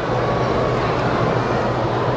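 Steady, loud noise with a low hum underneath, holding level without a break.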